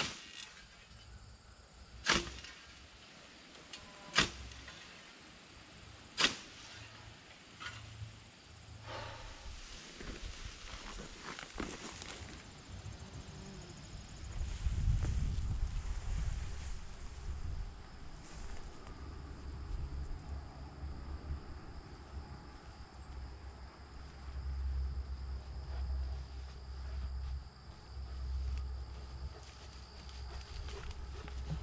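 Scythe blade sweeping through tall grass: four sharp swishing strokes about two seconds apart, then a few fainter strokes. Later a low, gusting rumble of wind on the microphone takes over.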